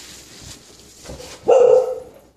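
A single loud, short pitched call about a second and a half into otherwise faint noise, lasting about half a second.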